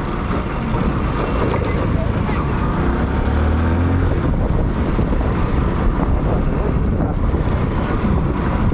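Wind rushing over the microphone of a moving motorcycle, mixed with the low running of engines in city traffic. A deeper engine hum swells briefly near the middle.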